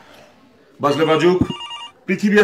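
A person speaking, starting almost a second in. Near the end comes a short, pulsing electronic ringing tone.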